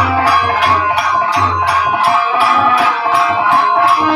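Live Bhojpuri devotional music: a shaken jingling rattle-type percussion keeps a steady beat of about three strokes a second over low drum strokes and a sustained melody line.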